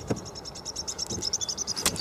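An insect chirping in a rapid, even train of high-pitched pulses. There is a soft handling knock at the start and a sharp click near the end as the camera is moved.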